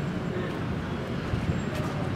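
Outdoor background noise: a steady low rumble, typical of road traffic, with faint indistinct voices.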